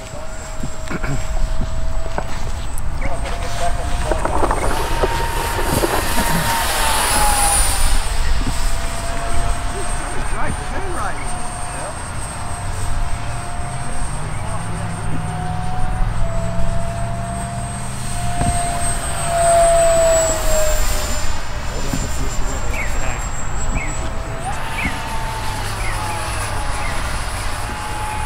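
50 mm electric ducted fan of a 3D-printed F4D Skyray RC jet whining in flight. Its pitch steps up about four seconds in, drops back a few seconds later, sags around twenty seconds in and rises again near the end as the throttle is worked.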